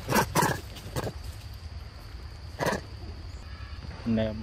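Short, harsh calls from a macaque: two at the start, another about a second in and one near three seconds.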